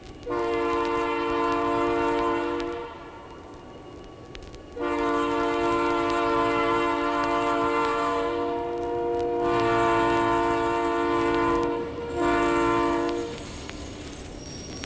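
Multi-tone train horn sounding a chord three times: a blast of about two and a half seconds, a long blast of about seven seconds, then a short one near the end.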